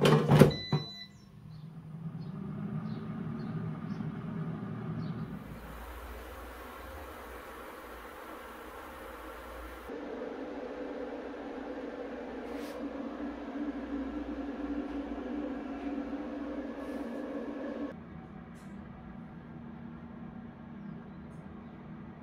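A thump as the air fryer basket is pushed back into the drawer, then the air fryer's fan running with a steady hum. The hum's tone shifts abruptly a few times.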